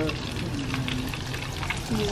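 Breaded chicken deep-frying in hot oil in a stainless steel saucepan: a steady crackle of many small, irregular pops and spatters.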